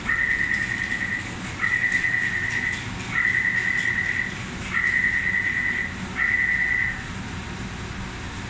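Metro door warning buzzer sounding five long, high electronic beeps, each about a second long with short gaps between them: the warning that the doors are about to close.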